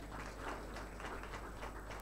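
Faint, scattered hand-clapping from a congregation: a run of irregular sharp claps.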